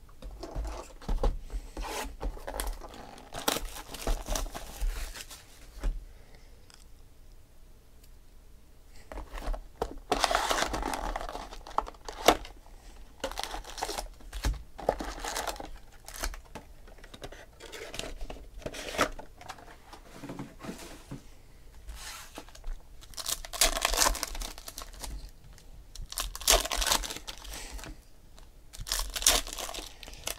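Trading-card box packaging and pack wrappers being torn open and crinkled by hand, in irregular bursts of tearing and rustling with a sharp snap about twelve seconds in.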